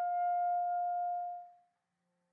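Solo B-flat clarinet holding a long final note, steady in pitch, that fades away about one and a half seconds in, closing the piece.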